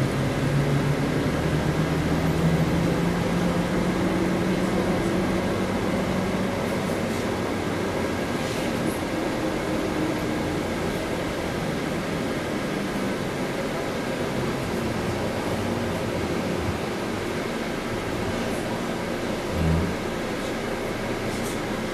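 Cabin noise inside a MAZ-103.485 city bus under way: a steady mix of engine and road noise. A low engine drone is strongest over the first few seconds, then eases into an even hum. A short low thump comes near the end.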